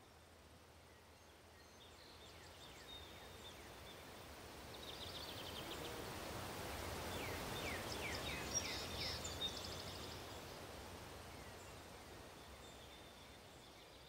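Faint outdoor ambience with small birds chirping: runs of short, falling chirps that swell to a peak about eight seconds in, with two brief sharper notes, then fade away.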